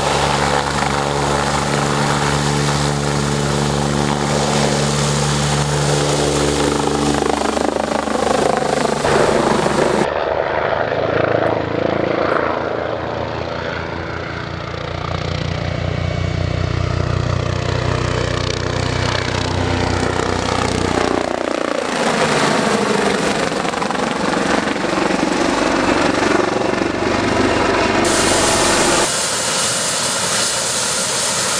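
A BK 117 twin-turbine helicopter running, heard in several cut-together takes. First comes a steady turbine whine with the rotor turning. About ten seconds in it changes to a rotor beating as the helicopter flies overhead, with its pitch shifting as it passes. Near the end it switches again to a helicopter running on the pad.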